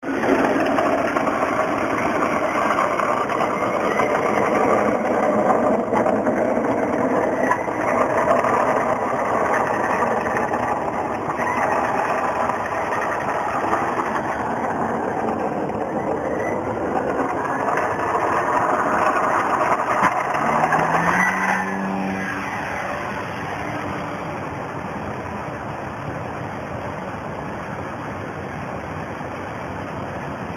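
Radio-controlled 3D Hobby Shop Vyper aerobatic model airplane, its motor and propeller running as a steady loud rush. There is a short rising pitch about 20 seconds in, and the sound falls away noticeably about 22 seconds in.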